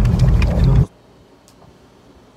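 Loud low rumbling noise with a few clicks, which cuts off abruptly under a second in, leaving only faint room tone.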